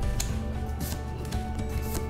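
Soft background music with the light rubbing and sliding of Pokémon trading cards being flipped through by hand.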